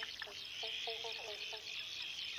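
Faint, steady high-pitched chirring of insects, like crickets, with a few short, faint low calls in the middle.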